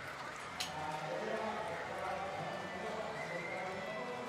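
Indistinct voices of people talking, with one sharp click about half a second in.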